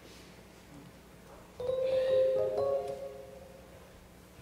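Electronic keyboard playing a held chord that comes in suddenly about one and a half seconds in, with a couple of higher notes added a moment later, then fading out after about a second and a half.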